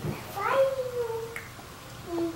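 A baby's drawn-out vocal sound about half a second in, sliding slightly down in pitch.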